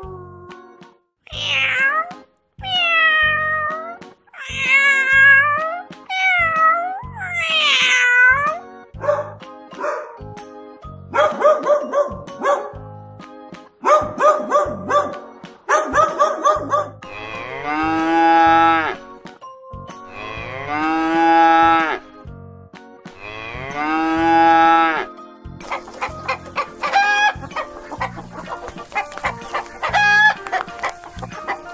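A string of recorded animal calls. First a wolf howls in about five short calls that rise and fall, over roughly the first nine seconds. Then a dog barks in quick runs, then come three long drawn-out calls of about two seconds each, and chicken clucking begins near the end.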